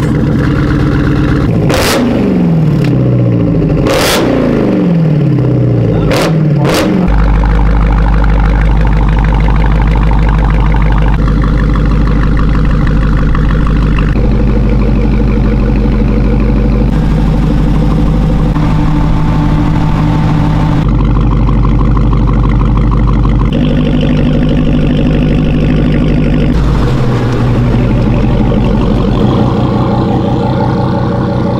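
Dodge Challenger SRT Hellcat Redeye's supercharged 6.2-litre Hemi V8 through a Milltek catback exhaust, blipped three times in the first few seconds with the revs falling straight back after each. It then settles into a steady idle whose pitch steps a few times.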